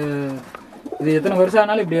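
Domestic fancy pigeons cooing in their loft: two low coos, the first fading about half a second in, the next starting about a second in.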